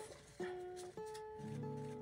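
Soft background music: held plucked-string notes, a new note starting about every half second.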